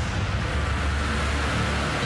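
Steady outdoor background noise: an even hiss with a low rumble that grows stronger about half a second in.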